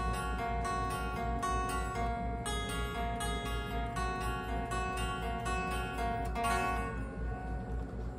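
Electric guitar picking a single-note lead melody slowly, a few notes a second, the notes left ringing into one another; the guitar is tuned a half step down with one string dropped to G sharp.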